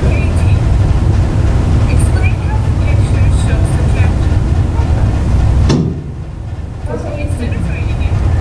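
A loud low rumble with faint, indistinct voices over it. The rumble drops out suddenly about three-quarters of the way through, then comes back within about two seconds.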